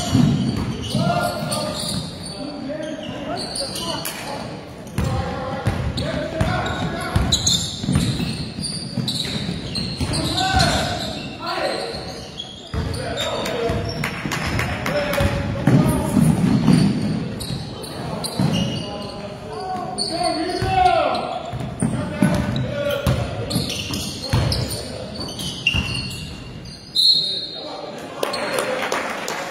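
Basketball bouncing on a gym floor during play, repeated knocks under shouting voices of players and spectators, echoing in a large hall.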